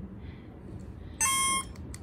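A small electronic buzzer on a Quarky coding robot gives one short, buzzy beep about a second in, as its LED game is played with its buttons.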